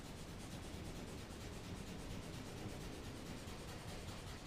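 A drawing tool scratching quickly and evenly back and forth across a large sheet of kraft paper: diagonal hatching strokes that shade one plane of a drawn box.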